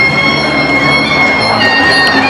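Traditional Muay Thai ring music (sarama), its reedy pi java oboe melody holding long notes and stepping down in pitch near the end.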